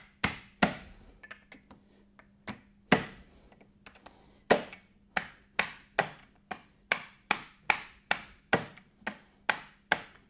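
Farrier's hammer striking a clinch cutter to knock off the nail clinches on a draft horse's hind crease shoe. A few scattered sharp taps come first; about halfway in they become a steady run of about two and a half strikes a second.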